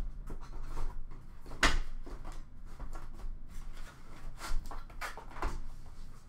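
Handling noise: a scatter of light clicks and knocks, with one sharper knock about a second and a half in and two more near the end.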